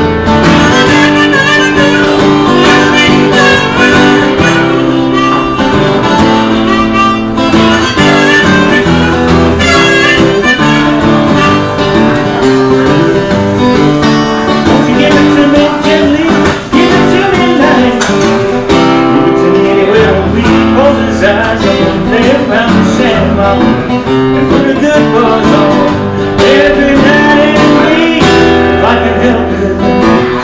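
Acoustic guitar played continuously through an instrumental passage of a song, with steady chords at an even level.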